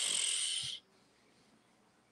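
A person's short, breathy exhale close to the microphone, a hiss with no voice in it, dying away under a second in.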